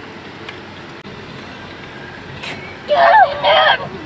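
Steady hum of a car's cabin noise, then about three seconds in a high-pitched child's voice calls out loudly for under a second.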